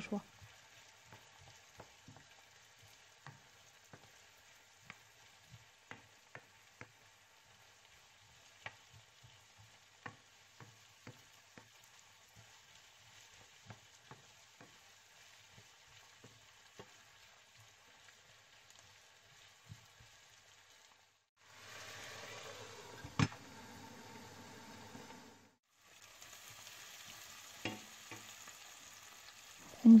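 Diced onion and bell peppers sizzling gently in oil in a frying pan, with light taps and scrapes of a wooden spoon stirring them. After a short break about two-thirds of the way through, the sizzling comes in louder and steady.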